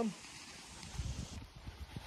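Faint rustling and a few light knocks from paper and split wooden kindling being handled at the open door of a small steel wood stove.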